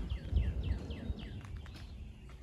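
A songbird singing a quick run of short, downward-slurred chirps, about five a second, that fades near the end. Under it runs a low rumble, loudest near the start.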